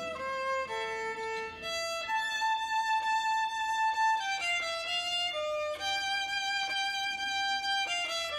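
A young boy playing solo violin with a bow: a slow, unaccompanied melody, a few short notes, then two long held notes of about two seconds each.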